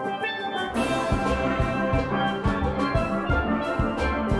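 Steel band playing: softer pan music fades, then a full steel orchestra comes in loudly about a second in, many steel pans over a steady drum beat.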